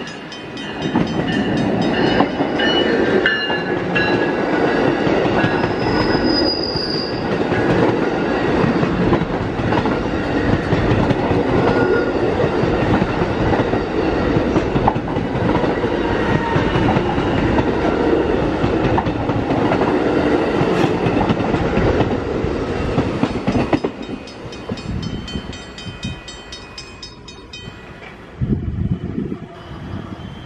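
Electric commuter train passing close over a level crossing: a loud, steady rush of wheels on rail for about twenty seconds, with high steady tones over it in the first several seconds. After the train has gone by, the crossing bell keeps ringing with an even beat.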